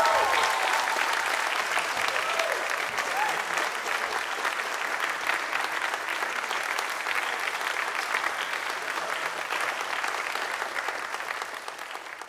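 Live audience and band applauding after a song, dense steady clapping with a few whoops at the start and again about three seconds in. The applause fades out at the very end.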